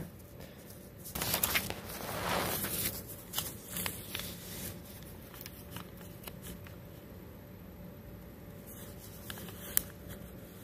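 Sheet of graph paper being folded and creased by hand, rustling for a couple of seconds and then crackling lightly as the wall and tab are bent up along their lines.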